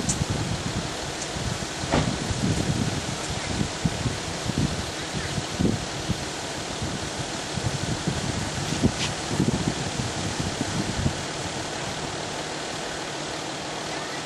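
Wind buffeting the camcorder microphone in irregular low rumbles for about the first eleven seconds, over a steady rushing hiss that carries on to the end.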